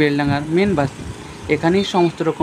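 A person's voice speaking over the steady noise of street traffic, with a short pause in the talk about a second in.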